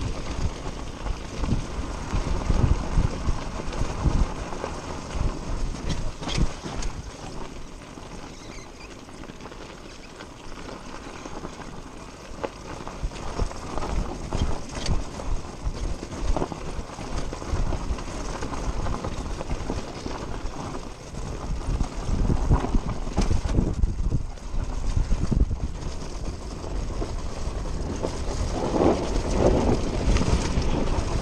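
Dirt bike being ridden over a rough dirt trail: its engine runs under steady wind noise, with frequent short knocks and clatter from the bumps. It gets louder in the second half.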